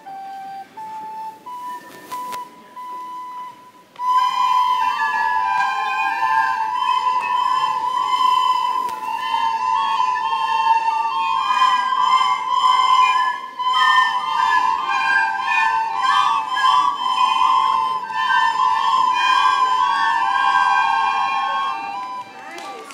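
A few lone recorder notes, then about four seconds in a large group of children starts playing a simple tune together on recorders, in unison.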